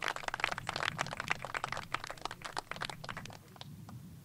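Scattered applause from a small crowd, many quick claps that thin out and fade away near the end.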